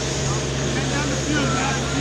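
Steady noise of wind on the microphone over a low, steady hum, with faint shouts from players far off across the field.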